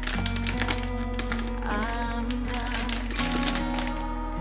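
Background music, with the crinkling of a plastic rice bag and light plastic taps and clicks as the bag and its plastic bag clip are handled over a plastic rice bin.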